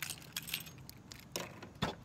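Faint light jingling and clicking of small loose objects, with a couple of sharper clicks in the second half.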